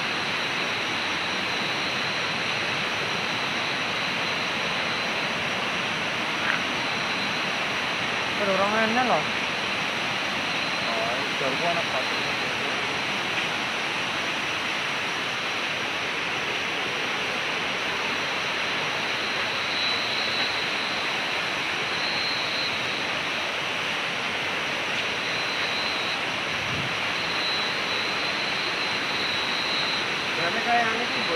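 Steady rushing of river water, with a thin high whine running over it. A person's voice is heard briefly about eight seconds in and again around eleven seconds.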